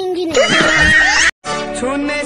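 Lip-sync soundtrack: a voice line ending in a loud, wavering, high-pitched comic sound effect that cuts off abruptly. After a moment of silence an Indian film song starts.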